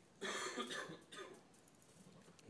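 A man coughing: one rough cough about a quarter of a second in, followed by a softer tail.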